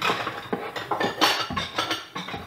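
Dishes clinking and clattering in a kitchen cupboard as a bowl is taken down from the shelf, a quick run of irregular knocks.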